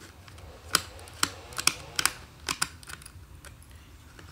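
Irregular sharp clicks and taps of fingers and a small screwdriver on a plastic audio cassette shell as it is handled, bunched in the first half.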